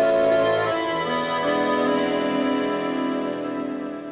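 Accordion playing the slow introduction to a French chanson: long held chords that change about a second in and again about half a second later, then fade near the end.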